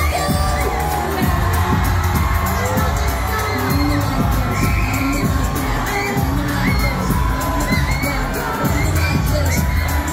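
Concert crowd of fans screaming and cheering over a loud K-pop backing track with a steady bass line.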